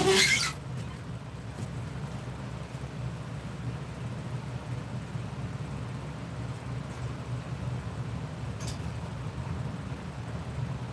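Steady low hum of grow-tent fans running. A brief loud rustle of handling noise comes right at the start, and a faint click comes near the end.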